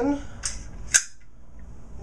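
AR-15 bolt carrier group being slid into the upper receiver: a faint metallic click about half a second in, then a sharp metal-on-metal snap at about one second as it seats in place.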